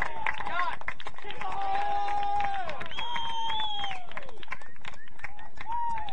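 Several voices shouting long, drawn-out calls across a soccer pitch, overlapping one another, with scattered sharp clicks and knocks.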